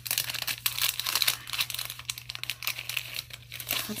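Thin clear plastic packaging crinkling as it is handled, a dense run of small irregular crackles.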